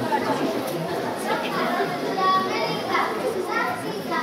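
Many children's voices chattering and calling out at once, a busy hubbub of young voices with no single speaker standing out.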